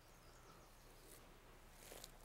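Near silence: faint background hiss with a steady low hum.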